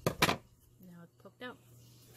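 Two quick sharp knocks just at the start, the loudest sounds here, followed by a couple of short vocal sounds from a woman.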